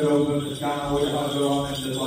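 A man's voice chanting an Ethiopian Orthodox liturgy, a melodic recitation carried on steady held notes without a break.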